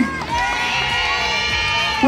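Audience cheering and shouting in answer to the host, many voices together, with music playing underneath.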